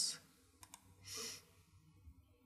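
Two quick, faint computer mouse clicks about half a second in, followed by a short, soft breath.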